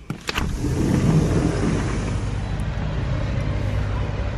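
A couple of quick clicks from the balcony door and its security bolt as it opens. Then a steady low outdoor rumble with hiss.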